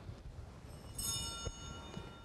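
Small altar bell rung about a second in, a bright ring that fades over about a second, marking the consecration of the chalice.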